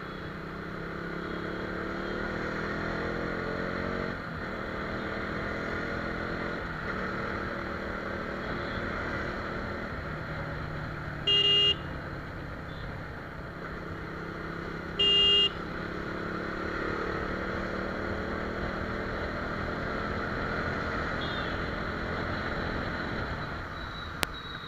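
KTM Duke motorcycle's single-cylinder engine running on the move, its pitch rising as it pulls and dropping back at each gear change. Two short horn beeps, a few seconds apart, come about halfway through and are the loudest sounds.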